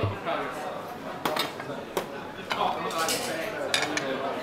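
Ceramic plates and utensils clattering in a busy restaurant kitchen during plating, with a few sharp clinks.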